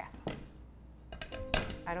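A sharp knock of an upturned metal cake pan against the plate beneath it, about one and a half seconds in, after a lighter click early on. The cake has not yet dropped out of the pan.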